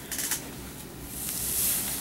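Lace wig rustling as it is pulled down over the head: a few light ticks, then a soft, high rustling hiss that swells about a second in.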